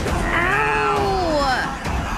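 A woman's drawn-out crying wail, one long whimpering cry that rises and then slides down in pitch over about a second and a half.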